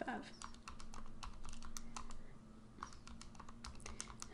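Buttons of a TI-89 Titanium graphing calculator being pressed in a run of quick, irregular clicks, with a short pause about two and a half seconds in before more presses.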